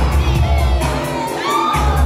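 Loud dance music with a heavy bass beat, played for a popping battle, with a crowd shouting and cheering over it. The bass drops out for a moment near the end, and whoops rise above the music.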